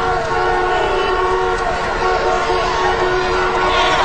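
Civil-defence air-raid sirens sounding a steady, held tone as warning of an incoming nuclear attack.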